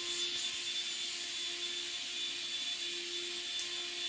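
Steady hiss with a faint, steady hum underneath, and a short click near the end.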